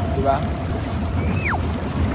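Jacuzzi jets running, churning the water with a steady rushing, bubbling noise. A short falling tone sounds about a second and a half in.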